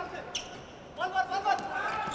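A volleyball struck by hand during a rally: one sharp hit about a third of a second in, with voices calling out in the second half.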